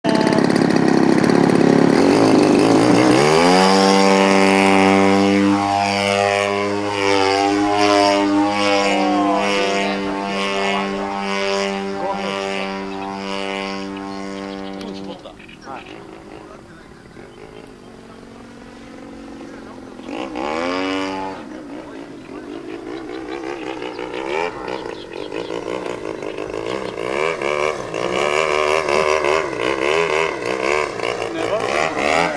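Gasoline engine of a large RC aerobatic model airplane running at high power. It climbs in pitch a few seconds in and then holds a steady high note. About halfway through it drops back suddenly and quietens, then swells again with the pitch gliding up and down as the plane flies past.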